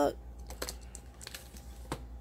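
Scissors snipping at the clear plastic wrap on a boxed journal set: a few small, sharp clicks spread out, the loudest near the end.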